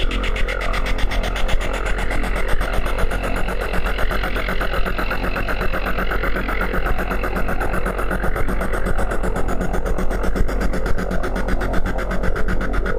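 Industrial noise electronica: a dense, fast, evenly pulsing texture over a steady deep drone, holding unchanged throughout.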